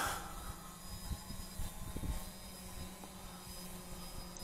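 Wind buffeting the microphone in a strong gusty breeze: a low, uneven rumble that rises and falls slightly.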